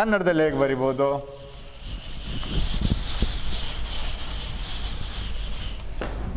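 A chalkboard eraser wiping chalk off a blackboard, scrubbing in rapid back-and-forth strokes from about two seconds in.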